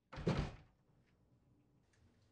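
A single heavy bang with a deep low end, lasting about half a second, then quiet room tone.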